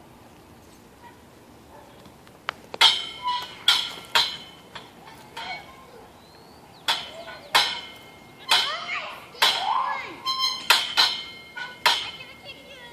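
Steel rings of a playground ring-traverse clanking against their hangers as a child swings from ring to ring. Sharp metallic clinks, each with a short ring, start about three seconds in with four in quick succession, pause, then come irregularly from about seven seconds on.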